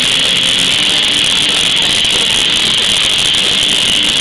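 Live rock band playing at full volume: overdriven electric guitars, bass and drums blur into a dense, even wall of sound with no pauses and no clear vocal line.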